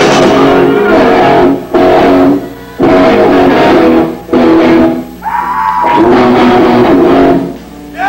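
Live rock band led by electric guitar, playing a loud stop-start riff: chords broken by short gaps, with a single held note ringing out about five seconds in.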